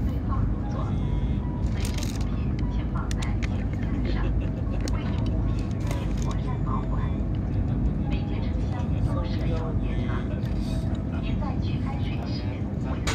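Cabin noise inside a CRH380A high-speed train running at speed: a steady low rumble, with scattered faint voices.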